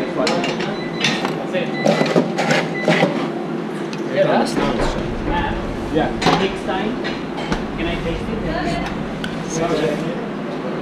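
Professional kitchen during service: sharp metal clatter from stainless-steel drawers, containers and utensils, over a steady extraction hum, with voices in the background.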